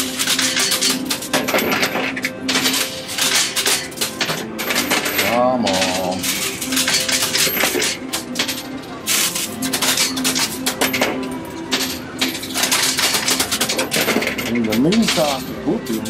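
Coins clinking and clattering continuously in a coin pusher machine as they drop onto and are shoved across its metal playfield, over a steady electronic hum or tone from the machine.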